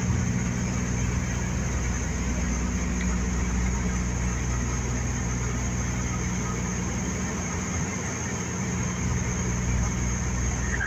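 Steady drone of a Dash 8 Q200's two Pratt & Whitney Canada PW123 turboprop engines heard inside the cockpit: a low hum with a thin, constant high whine above it.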